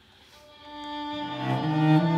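Violin and cello entering softly with sustained bowed notes that swell in loudness, the cello's low note coming in about a second in.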